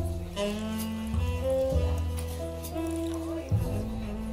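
Instrumental jazz: a saxophone melody over a bass line, with the notes changing every half second or so.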